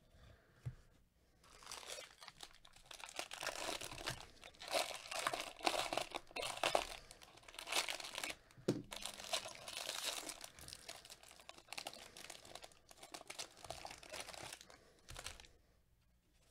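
Foil wrapper of a 2020 Bowman Draft Super Jumbo baseball card pack being torn open and crumpled by hand. It is a long run of crinkling and tearing that starts about a second and a half in and dies away just before the end.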